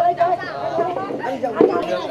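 Several people talking over one another in a lively conversation at a shared meal, with a brief knock about one and a half seconds in.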